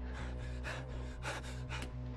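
A person gasping for breath in quick, short breaths, about three a second, over a low steady music drone in a film soundtrack.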